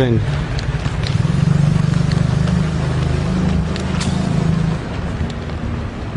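A motor vehicle's engine running in street traffic: a steady low hum that eases off about five seconds in.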